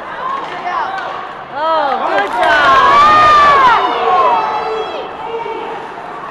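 Spectators at an ice hockey game yelling together: several voices rise sharply about a second and a half in, one long drawn-out shout carries for about a second, then the yelling fades back to crowd murmur.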